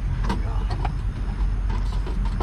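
Scattered light clicks and knocks of hand work on an RV's water-valve plumbing, reached from underneath through the open bay, over a steady low rumble.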